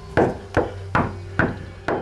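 Five loud knocks of a fist on a door, about one every half second.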